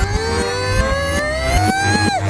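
A single long pitched tone gliding slowly and smoothly upward, over a steady music bed, from a cartoon soundtrack played backwards.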